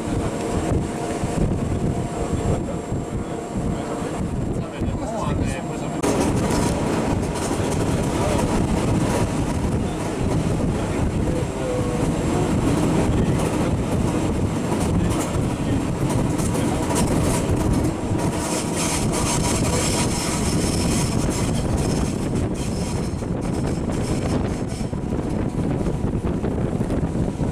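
Electric railcar Are 4/4 25 running along the line, heard from an open window: a steady rumble of wheels and running gear with wind on the microphone. The sound gets louder about six seconds in.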